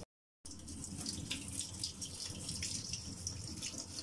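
Tap water running into a sink as a steady hiss with faint ticks and splashes, starting after a moment of dead silence at the very beginning.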